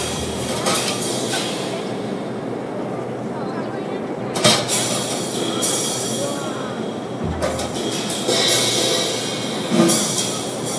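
Drum kit played live, mostly cymbal washes that swell and fade, with a sharp accented hit about four and a half seconds in and another near the end, and a low sustained tone entering in the second half.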